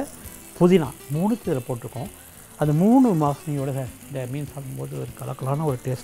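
A man talking, with a faint frying sizzle beneath the speech.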